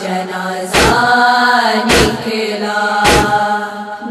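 Women's voices chanting an Urdu noha lament in long, drawn-out melismatic notes. A deep, sharp thump beats time under the chant a little more than once a second.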